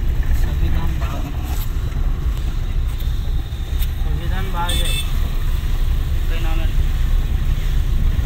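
Steady low rumble of a car's engine and tyres on a wet road, heard from inside the cabin while driving.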